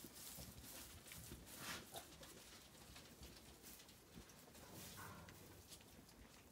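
Faint, irregular rustling of straw bedding and soft hoof steps as Zwartbles ewes walk through the straw.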